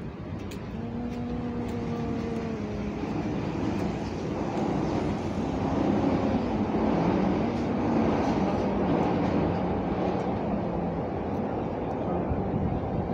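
City street traffic: a vehicle engine running and passing close by over steady road noise, growing louder through the middle.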